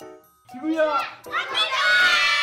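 A group of young children shouting a phrase together, starting about half a second in and getting louder toward the end.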